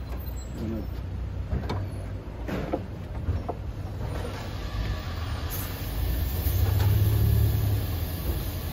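A motor vehicle's engine runs with a steady low rumble, swelling louder with a hiss during the last couple of seconds. A few faint, sharp ticks sound in the first few seconds.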